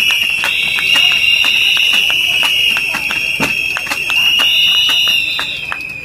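Crowd blowing shrill whistles in a long, steady, slightly wavering blast, with scattered clapping; it fades near the end.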